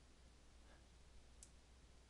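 Near silence with a few faint, short clicks of a computer mouse, the clearest about one and a half seconds in, as text is selected on screen.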